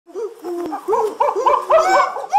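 Monkey call sound effect: a quick run of short hoots, each rising and falling in pitch, getting louder and higher toward the end.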